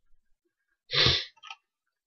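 A person's single short, explosive breath sound through nose or mouth about a second in, with a faint short tail after it.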